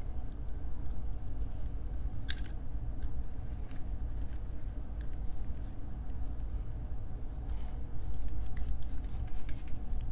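Small metallic clicks and scrapes of a precision screwdriver meeting a screw in a metal 3D-printer heater block, with gloved-hand handling noise over a steady low hum. One sharp click comes about two seconds in, and a quick run of clicks near the end.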